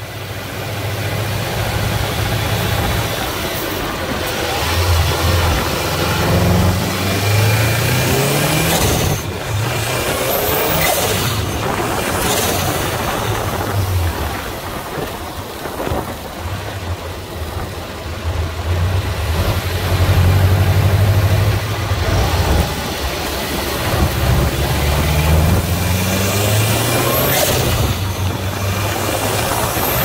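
Subaru WRX STI's turbocharged boxer engine running under way, its note rising several times as it revs up, under steady wind and road noise on a microphone mounted low at the front bumper.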